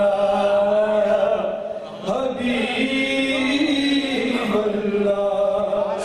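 A man's voice chanting a naat, a devotional poem in praise of the Prophet, in long held, gliding notes, with a brief breath pause about two seconds in.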